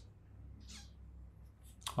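A quiet pause in speech over a steady low hum, with a short faint breath a little under a second in and a quick intake of breath just before the end.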